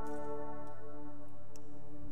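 A live worship band's held chord ringing on steadily, with a few light ticks over it.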